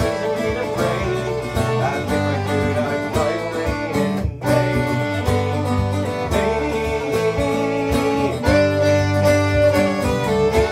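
Acoustic English folk trio playing an instrumental break: fiddle over strummed acoustic guitar and a mandolin, with a momentary gap about four seconds in.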